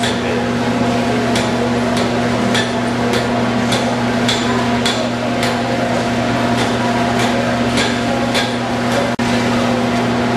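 Blacksmith's hammer striking metal on an anvil in a steady rhythm, a little under two blows a second, stopping near the end. A steady machine hum runs underneath.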